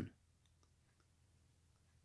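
Near silence: room tone in a pause between spoken phrases, with a few faint clicks.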